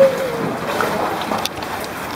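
Water sloshing around a sea kayak, with wind noise on the microphone. A brief wavering voice-like sound comes right at the start.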